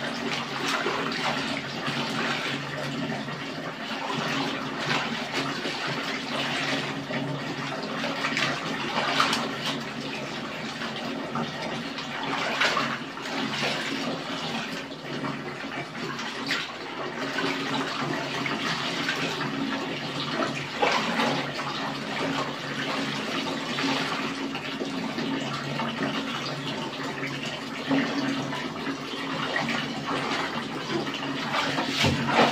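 Soapy water sloshing and splashing in a plastic basin as clothes are scrubbed, rubbed and lifted by hand, in irregular splashes that go on without a break.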